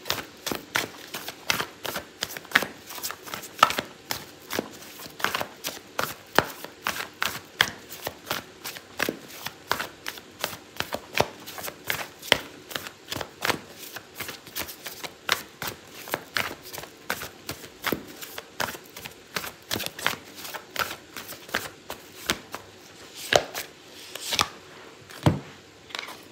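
A deck of oracle cards being shuffled by hand: a steady run of quick, irregular card flicks and taps, a few each second.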